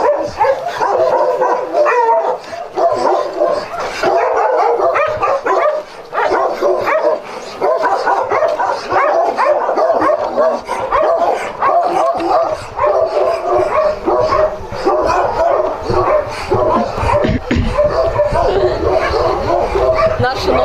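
Many dogs barking and yelping at once in a continuous, overlapping chorus.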